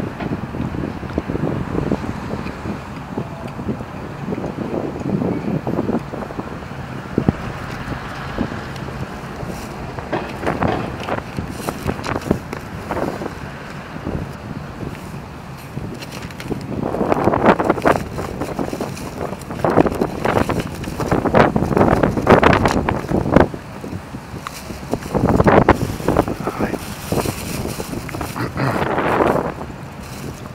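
Outdoor street noise with wind buffeting the microphone and indistinct voices, louder in bursts during the second half.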